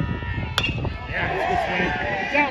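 A baseball bat hits a pitched ball once, a single sharp hit about half a second in. Spectators start shouting and cheering about a second later.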